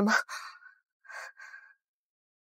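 The tail of a spoken question, then a person's breathy exhalation and two short, soft breaths.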